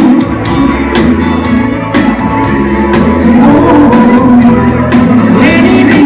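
Live band playing dance music with a steady beat, a singer's voice carried through the PA in a large hall.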